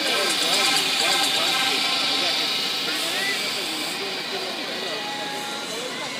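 A crowd of spectators shouting and cheering, many voices overlapping, slowly fading.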